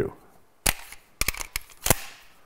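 Sharp metallic clicks of a Beretta 92 Compact pistol's magazines being swapped in a tactical reload: the partly spent magazine dropped out into the hand and a fresh one inserted and seated. There is one click about two-thirds of a second in, a quick run of clicks a little past a second, and a loud final click near the end. It is the noise that can make a reload sound like someone reloading an empty gun.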